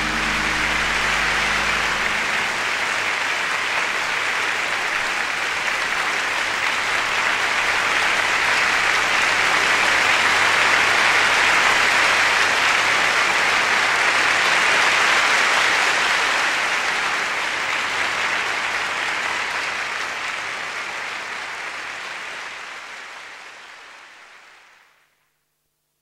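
Concert audience applauding steadily, swelling a little in the middle, then fading away and stopping about a second before the end.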